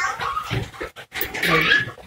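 Short high-pitched whining cries from an animal, twice: once at the start and again past the middle.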